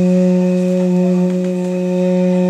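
Duduk, the Armenian double-reed woodwind, holding one long steady note.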